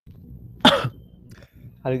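A single short, loud cough picked up by a video-call microphone, coming in over faint line hiss right after dead silence. A person starts speaking near the end.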